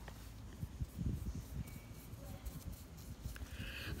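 Faint rustle and soft, irregular light knocks of a paintbrush dabbing pink powdered food colouring onto a sugar-paste butterfly on a paper towel.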